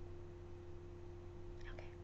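Quiet room tone with a steady low electrical hum, and a faint, brief voice sound near the end.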